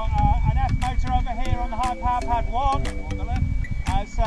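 Voices of people talking, not close to the microphone, over a steady low rumble of wind on the microphone.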